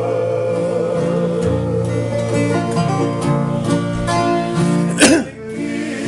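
Acoustic guitars strummed by a small group of men, with men singing together in a Tongan string-band song. A single sharp knock sounds about five seconds in, the loudest moment.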